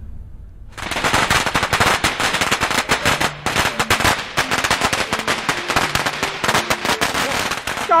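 Long strings of Chinese firecrackers going off in a dense, rapid crackle of bangs, starting about a second in.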